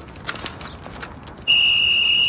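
A safety whistle gives one loud, steady, high-pitched blast as a warning, starting about one and a half seconds in.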